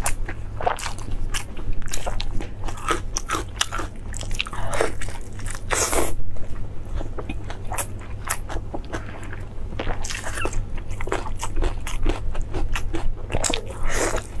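Close-miked eating sounds of biting into and chewing tender beef torn off the bone: an irregular run of wet smacks and clicks from the mouth, with a steady low hum underneath.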